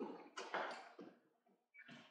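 A man's soft, brief chuckling in a few short faint bursts.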